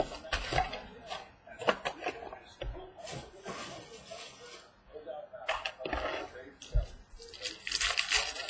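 Trading cards and a pack wrapper being handled on a table: scattered clicks and taps, with short crinkly rustles about three seconds in and again near the end.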